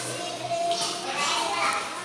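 Group chatter of several young voices talking and calling out over one another at once.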